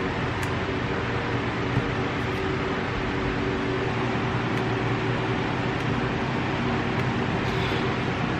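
Electric room fans running: a steady rush of air noise with a faint low hum underneath.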